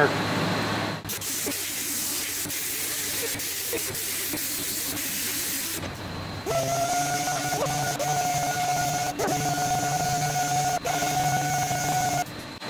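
Air-powered orbital palm sander cleaning up laser-cut thin stainless steel sheet: a steady rushing hiss of the abrasive on the metal for the first half, then from about six and a half seconds a steady pitched whine with a low hum beneath it.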